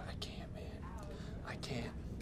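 A person speaking quietly, over a steady low hum of room noise.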